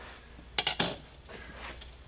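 Steel linear rod from an Anet A6 3D printer set down on a glass mirror: a quick cluster of sharp metallic clinks a little over half a second in, then faint sound as the rod is rolled across the glass to check it for a bend.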